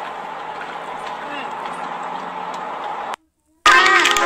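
Steady cabin noise inside a car, an even hiss, with a soft murmured "hmm" from a woman eating about a second in. The noise cuts off abruptly a little after three seconds, and after a short silence music starts near the end.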